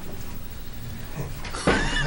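A pause with low room noise, then a person starts speaking about a second and a half in.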